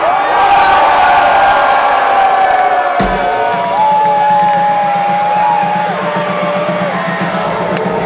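Large concert crowd cheering and whooping in front of a rock band's stage. About three seconds in a sharp thump comes through the PA, then a steady low amplified drone with long held tones over it as the band starts to play.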